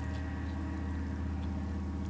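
Airboat engine droning steadily at a distance, a low, even hum with no change in pitch.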